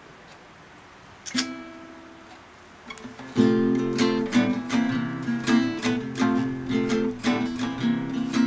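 Acoustic guitar strummed. One chord rings out and fades about a second in, then steady rhythmic strumming starts a little over three seconds in, on F and C7-type chords.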